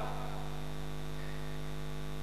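Steady electrical mains hum from the amplified sound system: a low, even buzz with a ladder of overtones and no change in level.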